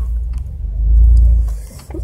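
Low engine and drivetrain rumble of an off-road Jeep crawling along a muddy trail, heard from inside the cabin, swelling about a second in and then falling away.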